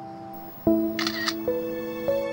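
Gentle background music of slow sustained notes, with a smartphone camera's shutter click, a quick double snap, about a second in as the photo is taken.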